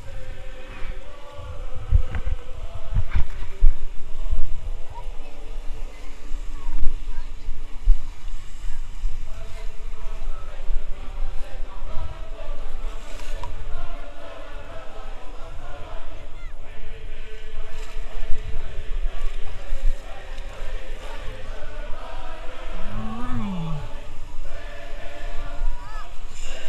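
Lake surf washing and splashing around an inflatable boat, with wind buffeting the action-camera microphone in uneven low rumbles and thumps. Voices and shouts of people on the beach are in the background, one rising-and-falling call near the end.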